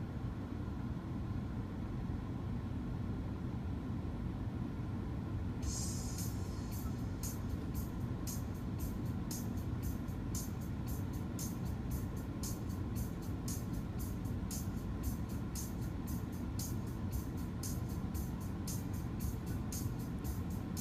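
Music playing from a car's CD player over a steady low rumble; about six seconds in, a steady beat of crisp high ticks comes in and keeps going.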